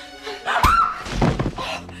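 A struggle: a hard thunk about half a second in, a short cry, then more blows and scuffling, over tense score music.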